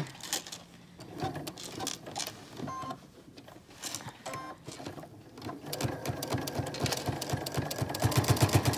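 Electric sewing machine stitching a bias-tape strap onto a fabric face mask: scattered clicks at first, then from about two-thirds of the way in a fast, even run of needle strokes that keeps going.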